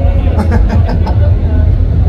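Live concert sound between songs: a man's voice over the PA, with crowd chatter and a heavy steady low rumble from the sound system.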